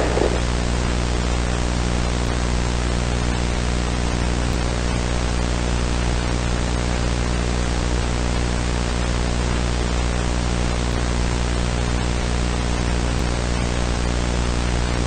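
Steady hiss with a low buzzing hum, the noise floor of a VHS tape transfer. At the very start the fading tail of a splat sound dies away.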